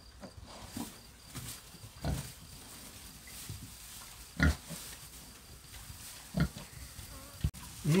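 Pigs, a sow with piglets, giving a few short, scattered grunts while rooting in straw.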